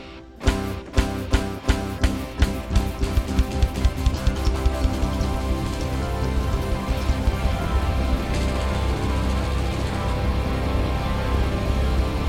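Live band music: a run of hard accented hits over a held chord that come faster and faster, building within the first few seconds into full, loud music with a steady heavy bass.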